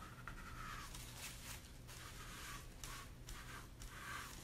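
Faint rubbing of a wipe scrubbing chalk paste off a chalkboard surface, in several short, irregular strokes.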